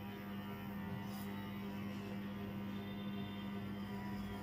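Small electric pet hair clipper running with a steady buzz close to a dog's face.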